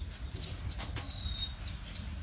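A lull with a steady low background rumble and three faint, high, thin whistled notes of a bird, the second sliding slightly downward.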